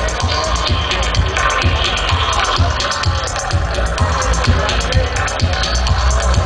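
Reggae dub played loud through a sound system, with a deep, heavy bassline repeating in a steady rhythm under regular hi-hat strokes. The recording is made among the crowd in front of the speakers.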